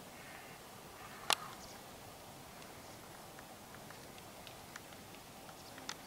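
Quiet outdoor farmyard background with one sharp click a little over a second in and a few faint ticks after it.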